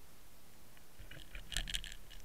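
Sharp clicks and crackles heard underwater through the housing of a Water Wolf fishing camera, starting about a second in and bunching into a quick burst near the end, over a low rumble as the camera rig moves in the water.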